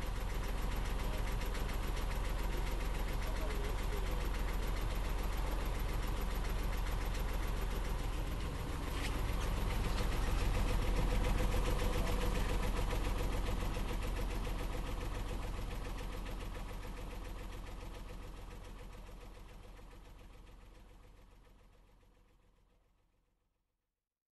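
Sailboat's inboard diesel engine running steadily under way, with a rapid even beat, growing a little louder about ten seconds in and then fading out slowly to nothing.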